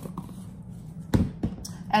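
Spice containers knocked down on a kitchen countertop: two sharp knocks about a quarter second apart, a little over a second in, with faint handling before them and a low steady hum throughout.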